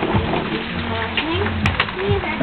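Steady hiss of rain falling, with brief indistinct voices and two light clicks late on.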